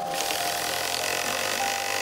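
Handheld power driver running steadily, driving a screw through a chrome cup washer into a chair's upholstered seat.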